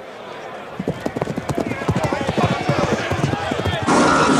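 Sound effect of heavy hoofbeats starting about a second in and building into a stampede, with a crowd of voices shouting over it.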